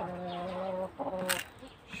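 A chicken calling: one drawn-out, even-pitched call lasting nearly a second, then a shorter one, with a sharp click in between.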